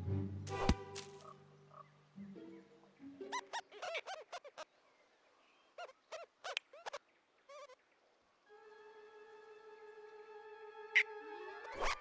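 Orchestral film score with a few notes at first, then cartoon rodents' high-pitched laughter in quick, chattering bursts through the middle, and a long held note near the end that swells up sharply.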